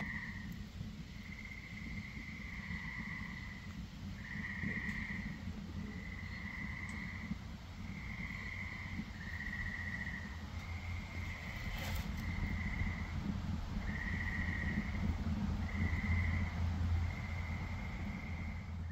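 Wood fire burning in a Solo Stove stainless steel fire pit, a steady low rumble with a few faint crackles. Over it, an animal calls again and again at night, each trill about a second long at the same high pitch.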